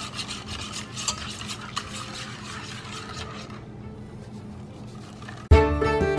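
Wire whisk stirring batter in a stainless steel bowl, in quick repeated strokes that fade after about three seconds. Background music starts loudly near the end.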